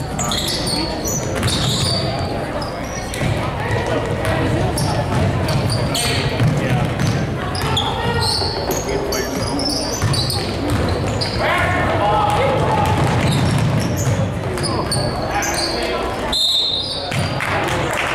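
Basketball bouncing on a hardwood gym floor during play, over the voices of spectators and players.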